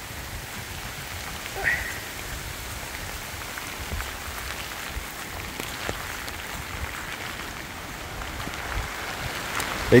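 Steady rain falling on grass and broad leaves during a squall in a hurricane's rain band. A brief high chirp stands out about two seconds in.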